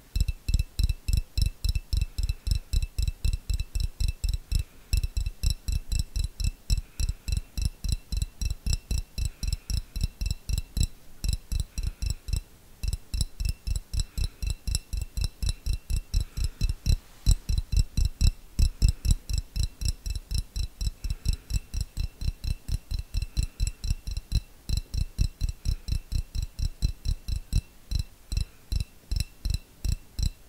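Fingertips tapping on a clear glass jar held close to the microphone: a fast, even run of dull taps, about four a second, with a couple of brief pauses.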